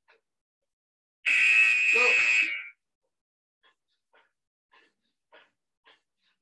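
A workout interval timer's buzzer sounds about a second in: a loud, steady electronic tone lasting about a second and a half, cut off suddenly. After it come short, hard breaths of a person exercising, roughly every half second.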